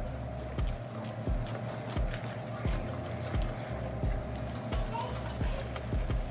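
Thick, wet cornmeal-and-pumpkin batter being stirred in a glass bowl, with scattered small scraping clicks, over background music with a steady low beat about one and a half times a second.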